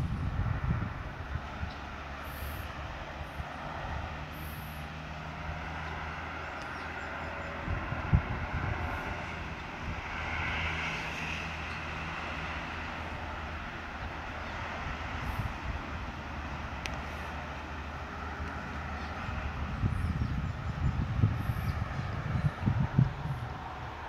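A steady low mechanical hum with a few held low tones under a broad outdoor background hiss. Wind buffets the microphone at the start and again near the end.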